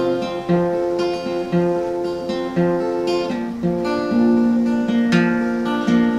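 Acoustic guitar played solo in an instrumental break between verses, picked and strummed over a steady beat of bass notes.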